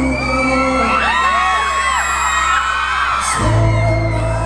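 Live pop song with singing and keyboard through a venue's PA, under many high screams and whoops from an audience of fans. The bass drops out shortly after the start and comes back in strongly near the end.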